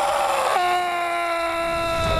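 A long, high-pitched cry of pain from the rottweiler character as hair wax is applied. It wavers briefly, then holds one steady note from about half a second in.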